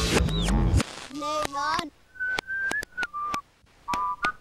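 Soundtrack of an animated TV channel ident. A loud low-pitched sound cuts off under a second in. Sliding whistle tones follow, then short whistled notes punctuated by sharp clicks.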